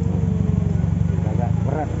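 A vehicle engine idling, a steady low drone with a fast even pulse. Faint voices come in near the end.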